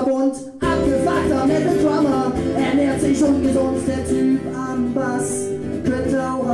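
Acoustic guitar strummed in a live song. The chords break off briefly about half a second in, then the strumming starts again.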